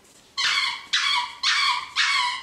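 A dog's squeaky Wubba toy squeaked four times in quick succession, about half a second apart, as the dog squeezes it in its mouth. Each squeak is a high, piping tone that dips at the end.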